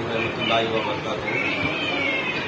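A man talking, with a high-pitched wavering cry over the speech and one longer falling cry near the end.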